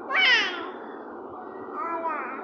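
A toddler's high-pitched squeal lasting about half a second, followed near the end by a second, shorter squeal.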